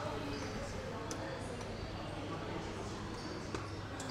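Quiet room tone: a steady low hum with faint background voices, and a couple of soft clicks, about a second in and again near the end.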